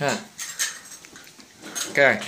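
A few light metallic clinks and knocks from a hand-held steel chakli press as its parts are handled.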